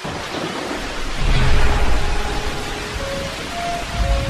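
Steady rain with a low rumble of thunder that swells about a second in, over a few soft held music notes.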